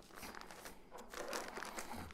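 Gallon-size plastic Ziploc bag full of frosting crinkling faintly as it is handled and pressed flat to push the air out.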